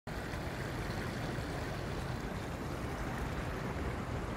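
Small creek running over rocks, a steady rush of water.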